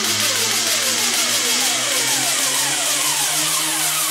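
Electronic dance music in a breakdown with no kick drum. A falling synth sweep repeats about every two-thirds of a second over a bright hiss-like wash and a held low bass note.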